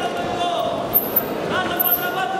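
Raised voices calling out in a large echoing sports hall, with a few short sharp sounds about a second in and again near the end.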